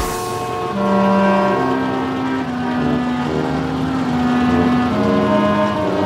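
A quick swoosh, then many car horns honking over and across each other at different pitches, held blasts overlapping without a break, as in a traffic jam.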